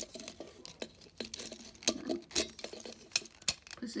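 Hard plastic parts of a Transformers Animated Blitzwing figure clicking and clacking as they are folded and moved into place by hand: irregular sharp clicks, the loudest about two and three and a half seconds in.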